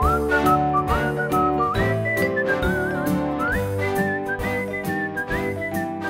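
A whistled melody that slides up into each phrase and wavers on its held notes, over backing music with chords and a steady drum beat.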